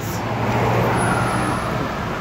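Road traffic: a motor vehicle running close by, a steady low hum under a wash of road noise.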